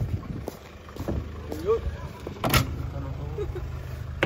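A van's engine running steadily at idle, with a few knocks and one loud clunk about halfway through as people climb into the vehicle.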